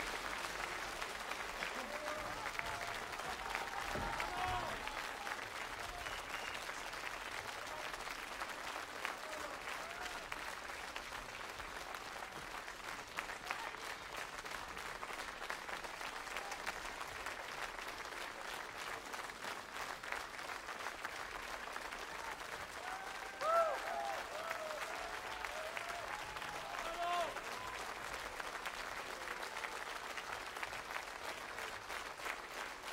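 Large audience applauding steadily, with a few voices calling out above the clapping, loudest about two-thirds of the way through.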